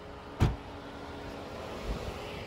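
A patrol SUV's door shutting with a single thump about half a second in, over a steady hiss of wind and road noise.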